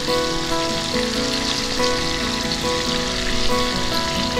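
Cut potato pieces frying in oil in a kadai, a steady sizzle, over background music of held notes.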